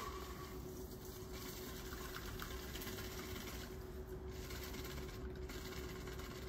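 Shaken cocktail double-strained from a steel shaker tin through a fine mesh strainer into a coupe glass: a faint, steady trickle of liquid over a steady low hum.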